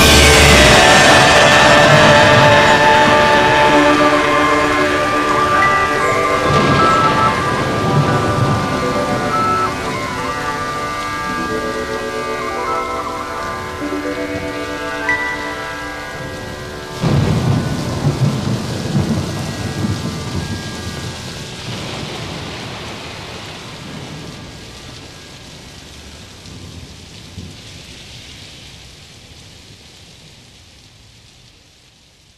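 Rain and thunder, with held musical tones dying away over the first half. A sudden loud thunderclap comes about seventeen seconds in, then the rain slowly fades out.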